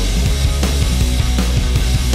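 Loud pop-punk rock music with no vocals: a full band with a steady drum beat over bass and electric guitar.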